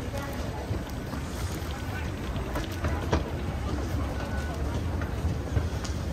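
Busy underground metro station ambience: a steady hubbub of many distant voices over a low rumble, with scattered light clicks and knocks.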